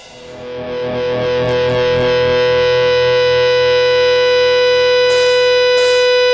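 Music: a held, distorted electric guitar chord swells up from quiet over the first couple of seconds and rings on steadily. Short bursts of high hiss come in near the end.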